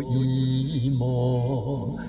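A man singing an enka melody in a low voice, holding long notes with a wide, even vibrato, over a karaoke backing track.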